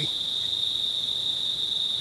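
Steady high-pitched insect drone, one continuous unbroken tone with no pauses.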